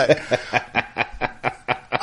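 A person snickering: a quick, even run of short breathy laughs, about six a second.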